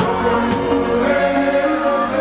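Live band music with many voices singing a chorus together, the audience singing it back to the singer.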